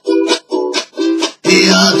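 Ukulele playing three short, choked chord stabs with silent gaps between them, then fuller, continuous strumming about one and a half seconds in.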